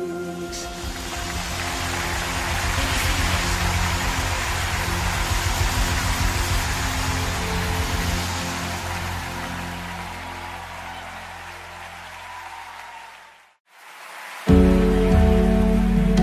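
Worship music: the end of one song, a hissing wash over a low pulsing bass, swelling and then fading out to a brief silence about thirteen seconds in. The next song then starts abruptly and loudly with sustained low notes.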